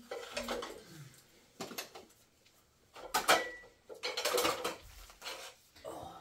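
Dishes and bowls clinking and clattering as they are handled and set down, in several short bursts, loudest a little past three seconds in.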